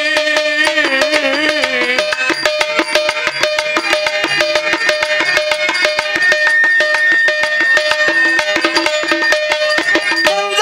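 Stage-drama accompaniment: a pair of hand drums plays a fast, steady rhythm with small hand cymbals striking along, under held melodic notes. A melody line wavers in pitch and ends about two seconds in.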